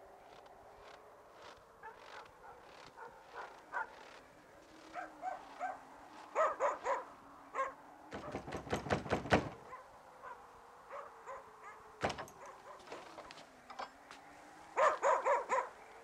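Dogs barking in repeated short bursts, with a quick flurry of barks in the middle and another volley near the end.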